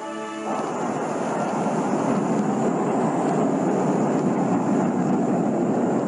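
Rocket launch: the steady roar of a missile's rocket engine at liftoff, building over the first second and then holding level.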